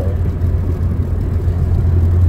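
Steady low hum of a running car heard from inside its cabin.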